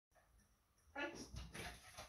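A short voiced call about a second in, then soft scuffs and light thuds as a small dog jumps down from a low platform onto foam floor mats.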